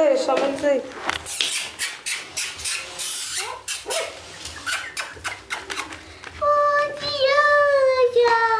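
Beagle puppies about three weeks old whining. A short falling whine comes at the start, then a run of light clicks and crackles from paws on newspaper, then a long high whine near the end.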